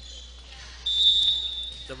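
Referee's whistle: one short, steady, high-pitched blast about a second in, the signal that lets the server serve.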